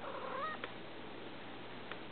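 Domestic cat giving one short meow, about half a second long, that bends upward in pitch at its end, followed by two short clicks.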